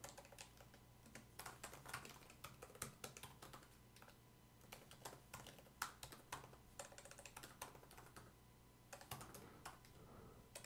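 Faint typing on a computer keyboard: quick runs of key clicks broken by two short pauses.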